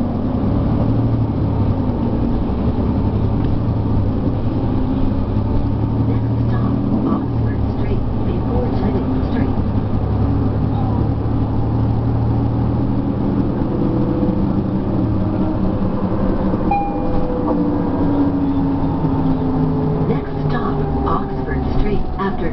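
Cabin sound of an articulated city bus under way: the Cummins ISL9 diesel engine and ZF automatic transmission running with a steady low drone. Rising whines come in over the second half as the bus pulls ahead.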